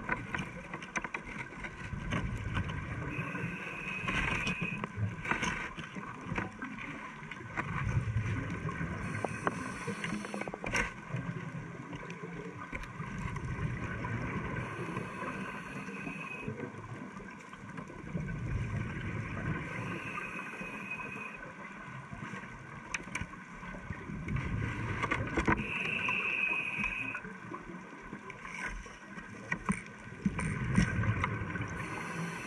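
Scuba regulator breathing heard underwater: a rumble of exhaled bubbles and a short high hiss on the breaths, repeating every few seconds, with scattered small clicks.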